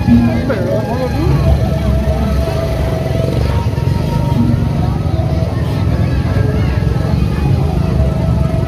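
Gendang beleq procession music: a dense, steady low drumming with a few held tones over it. Voices are close by, with a man speaking briefly near the start.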